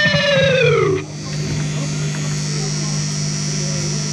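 A sustained electric guitar note slides steeply down in pitch and cuts off about a second in. A steady amplifier hum is left behind.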